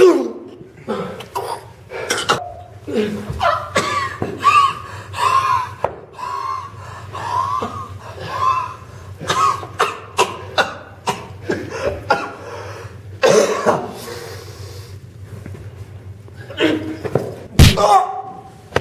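Men's pained grunts, groans and coughs, in short repeated bursts, over thumps and scuffling from a staged fistfight, with one loud impact near the end.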